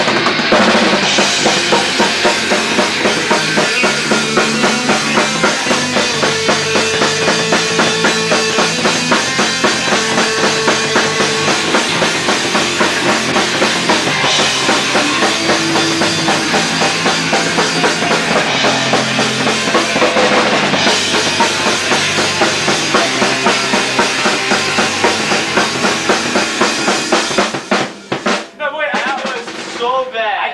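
Rock band playing live: drum kit, electric bass and electric guitar together, with the drums loudest and a steady driving beat. The band stops about two seconds before the end, leaving only a few loose guitar notes.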